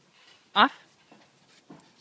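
Small Pomeranian–Keeshond mix dog panting after leaping for a rope toy, with one short, high bark about half a second in.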